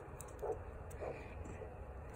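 Faint, soft pulsing whooshes of a handheld Doppler probe picking up the arterial pulse in the foot, about one beat every 0.6 s, while pressure is being reapplied over the abdominal aorta and flow has not yet been occluded.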